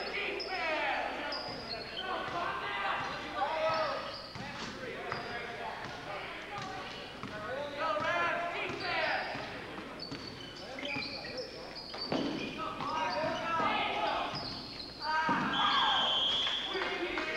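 Basketball being dribbled and bounced on a hardwood gym floor during play, with indistinct shouting voices of players and onlookers echoing through the gym.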